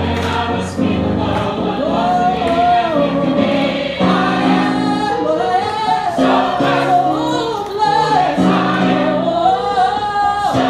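Gospel choir singing sustained chords under a lead voice whose long held notes waver up and down.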